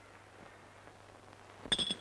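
Faint film-soundtrack hiss and a low steady hum, then a man's voice breaking in near the end, with a thin, steady, high ringing tone over it.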